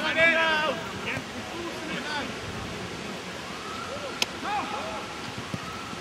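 Shouts of players on an open football pitch over a steady haze of wind noise. One louder call comes at the very start, fainter distant calls follow, and there is a single sharp knock about four seconds in.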